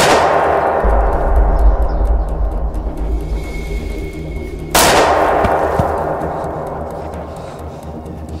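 Two cinematic pistol gunshots, each a sudden loud crack with a long echoing decay, the first right at the start and the second just under five seconds in, over dramatic background music. A thin high tone holds for a second or so before the second shot.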